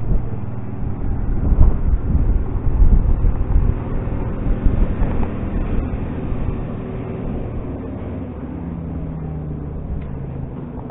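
Wind buffeting the microphone in uneven low gusts, heaviest in the first half and easing later, over a steady low hum.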